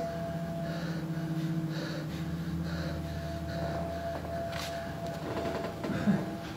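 A low, steady droning chord of stage sound held under the scene, its deepest note swelling after about two seconds and easing off near the end, with faint breaths over it.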